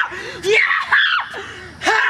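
A teenage boy screaming in excitement over a landed water bottle flip: three or four loud cries whose pitch swoops up and falls away.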